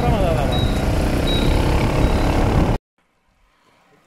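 Wind rushing over a camera microphone moving with cyclists on the road, with a short high beep repeating about every 0.7 s. About three seconds in the sound cuts off suddenly to near silence.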